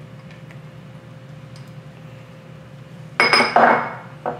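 Small glass prep bowl clinking as it is set down, with a brief high ring, a little after three seconds in. Before that there are only a few faint clicks over a steady low hum.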